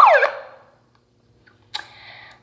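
A handheld megaphone's built-in siren, loud, wailing in rapid falling sweeps about four a second, then stopping about a third of a second in.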